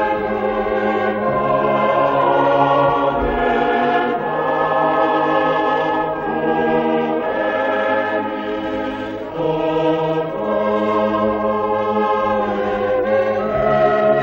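A choir singing a slow hymn in held chords, with several voice parts moving together from one sustained note to the next.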